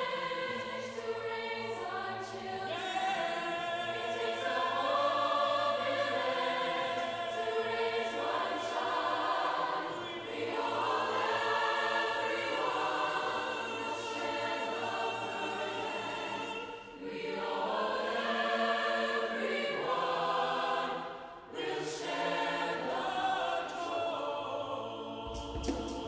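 A large choir of men and women singing sustained chords together, with two brief breaks between phrases in the second half.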